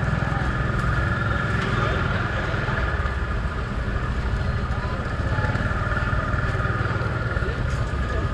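Street-market ambience: a steady low rumble of motorbike traffic under people's chatter, with a steady high-pitched hum.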